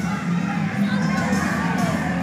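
A crowd shouting and cheering over loud music with a steady, pulsing beat.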